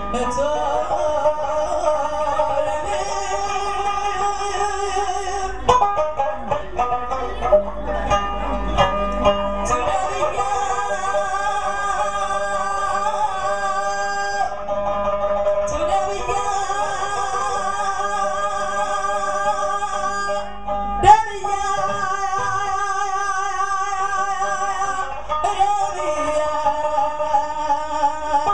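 Mauritanian griot music: a woman sings long, ornamented, wavering lines over plucked tidinit lutes and ardine harp. About six to ten seconds in, the voice mostly drops out under a run of plucked strings, and about 21 seconds in there is a single sharp knock.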